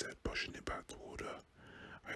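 Whispered speech: a man reading a story aloud in a whisper.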